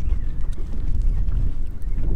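Wind buffeting a clip-on microphone: a steady, uneven low rumble.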